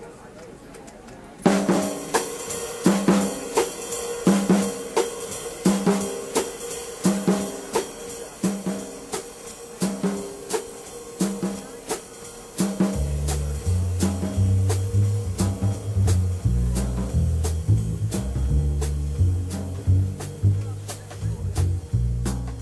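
Jazz drum kit starting the tune in a swing rhythm after a short pause, with snare, rimshots and hi-hat. About two thirds of the way in, an upright bass joins with low walking notes under the drums.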